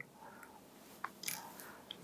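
Quiet pause in room tone with faint mouth sounds from the interviewee: a single small click about a second in, then a short soft breath.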